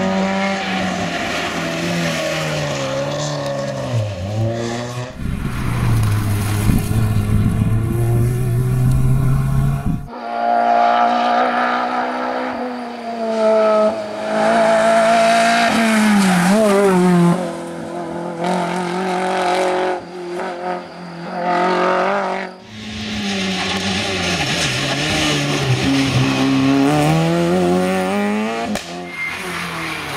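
Rally car engines revving hard as the cars pass one after another on a tarmac stage, their pitch climbing and dropping with gear changes and lifts off the throttle. The sound breaks off and changes suddenly three times as one pass gives way to the next.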